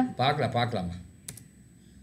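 Computer keyboard being typed on under a voice, then a single sharp click a little over a second in as a search is entered.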